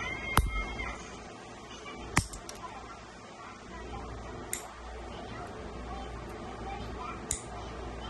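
Small metal nail clipper clicking as it is handled and worked: four sharp clicks spread through, the loudest about half a second and two seconds in, over a low steady background hum.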